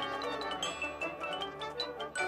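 Marching band playing, with front-ensemble mallet percussion on top: a quick run of struck notes on marimba and glockenspiel over low held chords.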